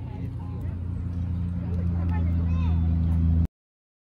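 Low, steady motor-vehicle engine hum that grows louder over a couple of seconds, under faint voices; the sound cuts off abruptly about three and a half seconds in.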